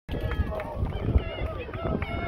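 Chatter of several spectators' voices overlapping, with no single voice standing out, over a low rumble.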